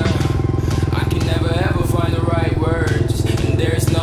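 Two-stroke enduro motorcycle engine idling steadily, with a person's voice over it.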